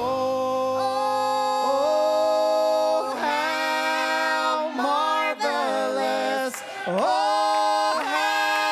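Mixed vocal trio of two men and a woman singing a gospel song in harmony through handheld microphones, unaccompanied, in long held notes with short breaks between phrases.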